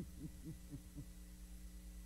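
Faint, short, low-pitched hummed murmurs from a voice, several quick ones in the first second and then fading, over a steady low electrical hum.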